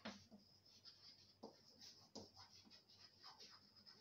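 Chalk writing on a blackboard: faint, irregular taps and short scratches as letters are written out.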